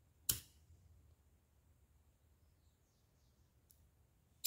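A disposable lighter struck once, giving a single sharp click about a third of a second in, as it is lit to sear the cut ends of the ribbon. Otherwise faint room tone.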